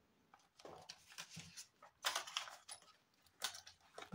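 Faint rustling and light clicks of clear plastic envelope pockets in a ring binder being handled as a banknote is put away, with a couple of louder rustles about two seconds in and again near the end.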